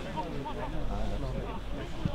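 Indistinct voices of players and spectators calling and talking across an outdoor football pitch, over a steady low rumble.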